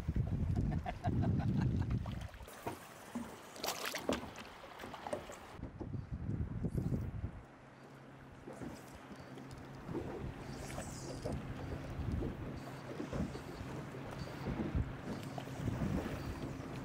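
Open-water ambience around a small fishing boat: wind on the microphone and water against the hull, with scattered knocks and clicks. The first couple of seconds carry a loud low rumble, and a faint steady hum comes in about halfway through.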